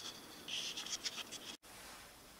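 Faint scratchy rustling with a few light clicks, cut off abruptly about one and a half seconds in, leaving only faint hiss.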